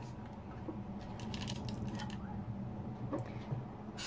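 Parchment paper being pressed and smoothed into a metal loaf pan by hand: faint, scattered crinkling and rustling with a few light ticks.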